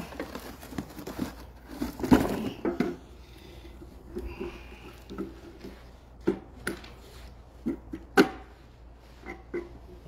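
Cardboard rustling and crinkling as a small metal box is pulled out of a carton and handled, with several sharp knocks and clunks, the loudest about eight seconds in.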